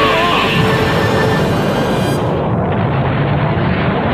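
Anime explosion and energy-blast sound effect: a loud, steady rushing noise over music. About two seconds in, the highest part of the noise drops away.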